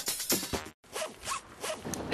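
Electronic music cuts off about half a second in. After a brief gap come about four short rasping pulls of harness webbing being drawn tight through a metal buckle.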